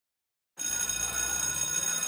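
An electric school bell starts ringing suddenly about half a second in and keeps ringing steadily.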